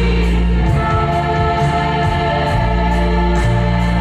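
Girls' choir singing long held chords over loud instrumental accompaniment with a deep bass line and a steady beat.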